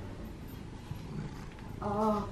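A domestic cat makes low, faint sounds right at the microphone as it brushes against the camera. Near the end there is a short voiced call.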